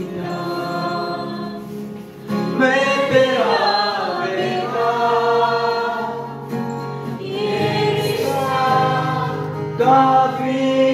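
Group of voices singing a Christian worship song in long held phrases, with short breaks about two seconds in and again about three-quarters of the way through.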